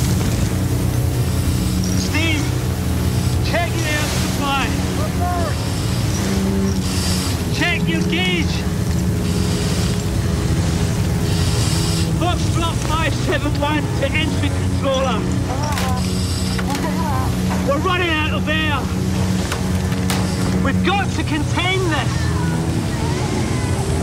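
A steady, loud low mechanical drone, like a running engine, with indistinct voices calling and talking over it.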